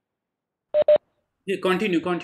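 Two short electronic beeps in quick succession, about a second in, each a steady tone, followed by a voice starting to speak.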